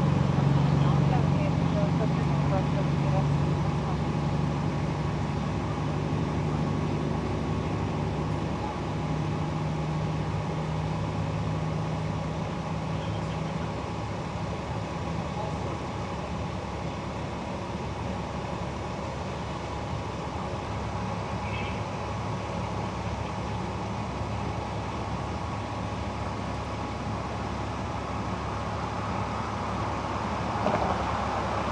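Large truck engine idling with a steady low hum; a stronger droning tone in it cuts out about halfway through, leaving a lower steady idle.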